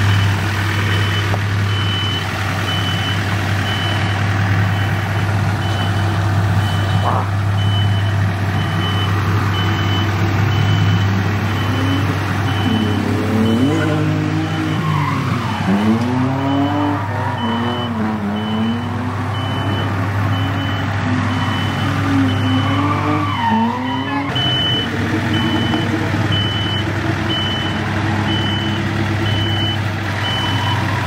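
Compact diesel tractor engine running steadily while towing a car on a chain. A reversing alarm beeps at an even pace throughout, and wavering tones rise and fall twice around the middle.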